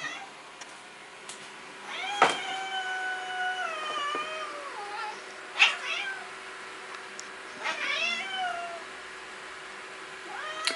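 A domestic cat yowling to be let outside, three times: a long drawn-out call about two seconds in, a short sharp one midway and another near the end. A sharp click comes just as the first call starts.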